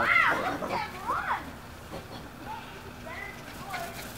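A person's voice in a few short rising-and-falling calls during the first second and a half, then a low steady outdoor background.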